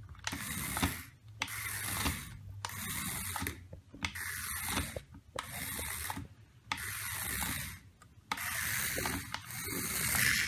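The gear mechanism of a mechanical toy mouse, whirring in about eight bursts of just under a second each, with short gaps between them.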